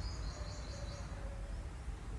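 Outdoor ambience: a steady low rumble with a bird's high, rapid chirping during the first second.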